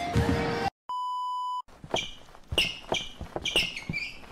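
Edited sound-effect audio cuts off, and about a second in a single steady electronic beep sounds for under a second. After it come repeated short high-pitched squeaks and faint low knocks.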